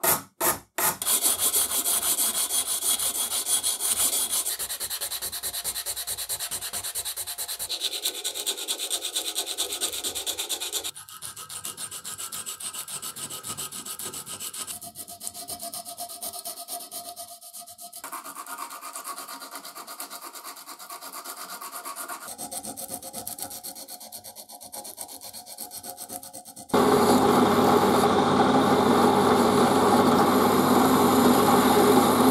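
An abrasive strip is pulled rapidly back and forth across a steel part clamped in a bench vise, then a small piece of abrasive cloth rubs the steel more quietly by hand. Near the end a drill press switches on and runs steadily, with a small rotary abrasive bit turning against the part.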